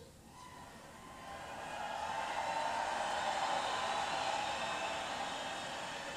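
Noise of a large arena crowd, swelling about a second in and then holding, heard as a recording played over a church's loudspeakers.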